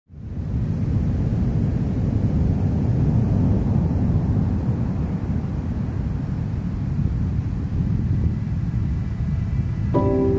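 Ocean surf breaking on a sand beach: a steady low rumble of waves with no single crash standing out.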